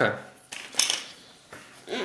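Brief rustle and click of small cardboard lotto chips and cards being handled on the game board, with a voice starting near the end.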